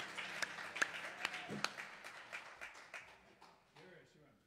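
A small group of people clapping after a song, separate claps clearly audible, the applause dying away over about three seconds, with a few voices mixed in.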